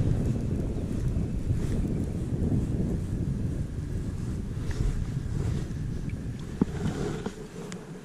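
Wind buffeting the microphone as a steady low rumble that eases near the end, with a couple of faint clicks.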